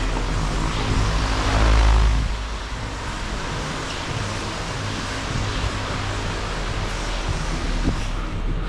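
Steady whir of large shop pedestal fans, with a low rumble of air buffeting the microphone that swells about a second and a half in and then falls away.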